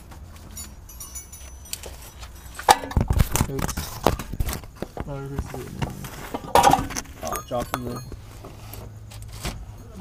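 Indistinct voices under a car, mixed with sharp metallic clinks and knocks of tools and parts, and handling noise as the camera is picked up and moved.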